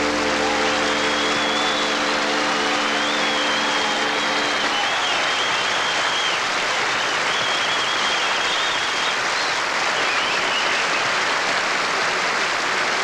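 Studio audience applauding steadily, with a high wavering whistle riding over the clapping for most of the time. The organ's last held chord fades out under the applause about five seconds in.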